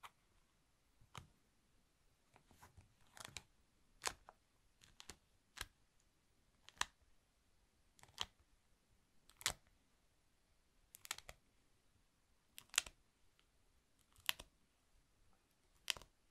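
A honeycomb wax sheet being pressed and peeled by hand: a string of short, sharp sticky crackles, about a dozen of them, roughly one a second.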